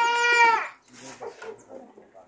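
A goat bleats once: a single steady, high call of under a second that drops slightly in pitch as it ends.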